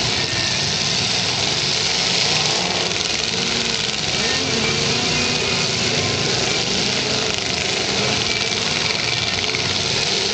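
Several demolition derby cars' engines running together in a loud, steady din, with engines revving up and down about halfway through.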